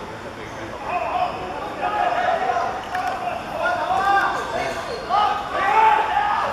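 Several voices shouting and calling out at a football match, with the loudest calls near the end as the attack reaches the goal.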